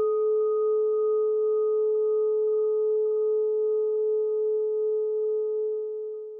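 A single ringing, bell-like tone held as the opening note of a song's intro. Its upper overtones die away first, leaving one steady pitch that fades slowly near the end.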